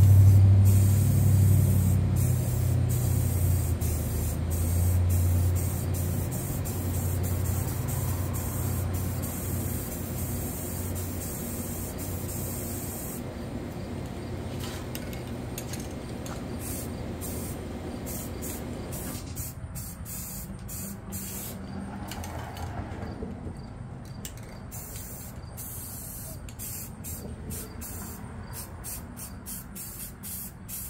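Aerosol spray paint cans hissing as paint is sprayed onto the water surface of a hydro-dip tub, in long bursts with short breaks that come more often in the second half. A low rumble, loudest at the start, fades away over the first several seconds.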